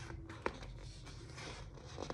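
Paper pages of a picture book rustling faintly as the book is handled and turned to face out, with one sharp tap about half a second in.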